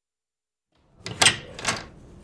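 Dead silence for most of the first second, then two sharp clacks about half a second apart, of the kind a door or drawer makes when handled.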